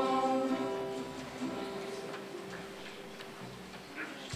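A children's choir with acoustic guitar ends a song. The final sung chord stops about half a second in, and the guitar's last chord rings on and slowly dies away.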